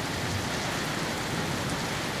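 Steady rain falling on wet paving and surrounding surfaces in a downpour, a constant even hiss.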